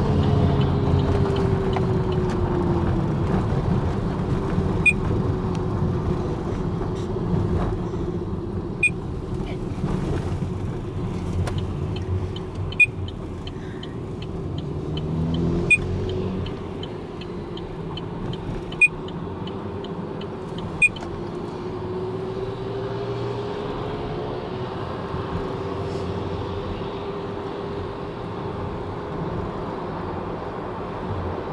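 A car driving on a highway, heard from inside the cabin: steady engine and tyre noise, the engine note slowly rising and falling, with a handful of sharp clicks scattered through.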